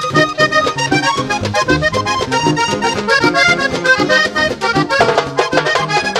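A vallenato button accordion playing a fast run of notes in an instrumental passage, with the rest of the band's bass and rhythm going steadily underneath.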